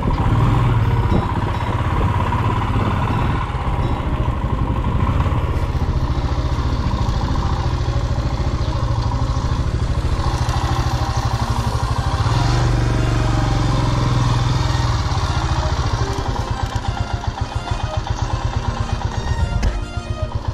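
Royal Enfield Himalayan's single-cylinder engine running as the motorcycle rides along a dirt track, its regular pulsing beat plainest in the last few seconds.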